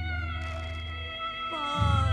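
Background score music: sustained held tones over a pulsing low bass that drops out about a second in and comes back near the end, with a descending sliding note in the second half.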